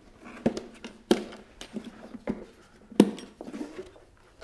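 Black plastic air filter box being handled and fitted together: a series of irregular plastic knocks and clicks, the loudest about three seconds in.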